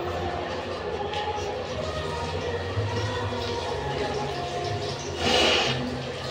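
A woman crying, blowing her nose hard into a tissue once about five seconds in, over a steady low hum.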